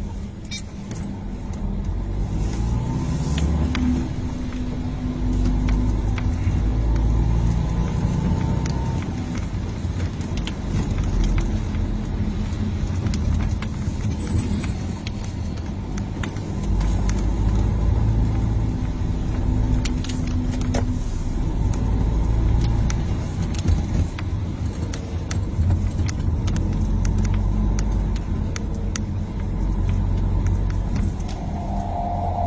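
Taxi driving, heard from inside the cabin: a continuous low engine and road rumble that swells and eases, with scattered light clicks.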